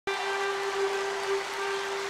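A single steady held note, rich in overtones, sustained at an even level over a faint background hiss.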